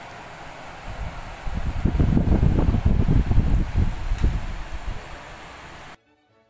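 Steady fan-like noise, with loud, irregular low buffeting on the phone's microphone from about one to five seconds in; the sound cuts off suddenly at the end.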